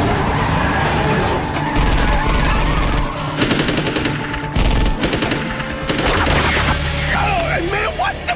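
Bursts of rapid automatic gunfire from a weapon fired out of a moving car's window, mixed over a film music score. The shots come in several runs of a second or so.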